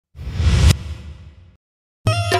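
Logo sound effect: a whoosh that swells over about half a second to a sudden hit, then fades away.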